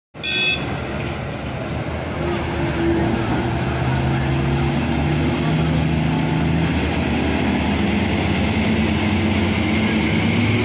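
Heavy diesel engines of a Lovol 1000 hydraulic excavator and Komatsu HD465 dump trucks running steadily. The engine note shifts in pitch as the excavator works through its dig-and-load cycle. A brief high tone sounds right at the start.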